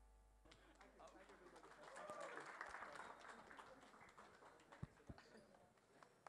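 Near silence: faint background noise that swells slightly in the middle, with a couple of soft clicks near the end.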